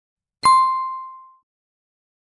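A single bright bell-like ding sound effect, struck about half a second in and ringing out, fading away over about a second.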